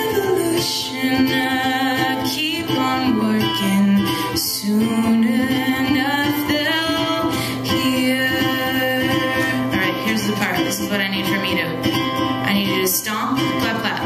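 A woman singing a melody live over a strummed ukulele.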